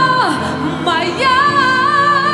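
A woman singing with grand piano accompaniment: a held note slides down just after the start, then a new long note with vibrato begins about a second in.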